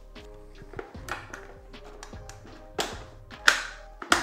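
Background music with sustained notes, over which 3D-printed plastic suit panels clack and knock a few times as they are fitted together by hand, the loudest knock near the end.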